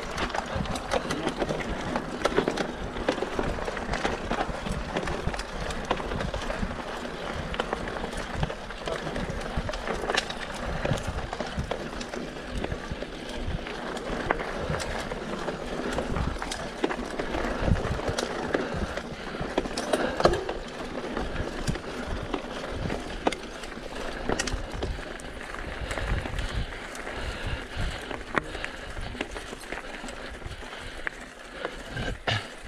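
Mountain bike ridden over rocky, gravelly trail: the tyres crunch on loose stones and the bike rattles, with frequent sharp knocks.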